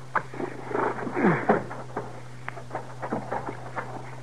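Radio-drama sound effects of horses being halted and left: scattered clicks of hooves and footsteps, and a horse blowing with a falling sound about a second in.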